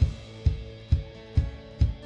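Live drum kit keeping a steady beat between sung lines, a bass-drum-and-snare strike about twice a second, over a low held note.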